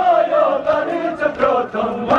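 Male voices chanting a Kashmiri noha, a Shia mourning lament, with faint rhythmic slaps of hands on chests (matam) about every 0.7 seconds.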